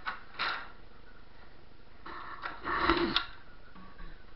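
Handling noise of a handheld camera being moved: a couple of short rustles near the start, then a longer stretch of rustling and scuffing about two to three seconds in, loudest near the end of that stretch.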